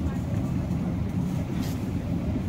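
A steady low rumble of background noise, with no distinct events.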